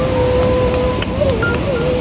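Fast whitewater mountain stream rushing steadily over rocks, with a pure whistle-like tone held for about a second and then wavering up and down over it.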